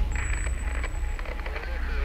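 Indistinct voices over a steady low rumble; the voices come in more clearly near the end.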